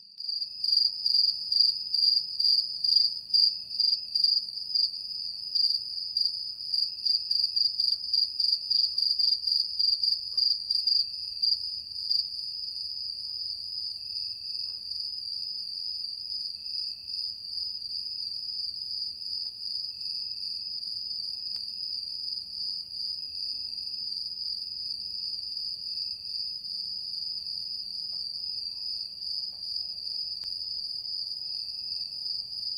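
Insects chirping: a steady high-pitched trill, with a louder, rapidly pulsing chirp over it for about the first twelve seconds.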